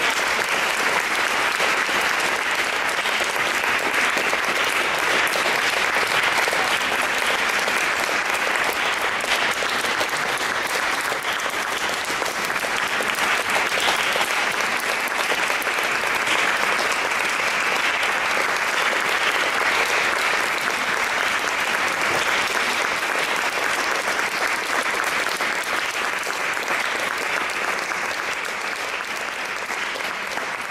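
Audience applauding steadily after a performance, easing off slightly near the end.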